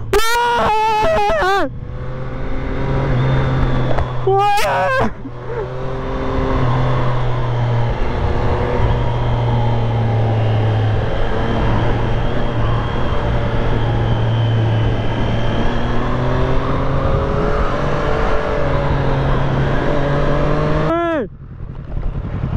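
Triumph Street Triple 765 RS inline three-cylinder engine running steadily at cruising revs, heard from the rider's helmet camera with wind noise over it.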